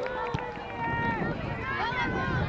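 Voices of players and spectators calling out across a soccer field, several at once, with one sharp knock about a third of a second in.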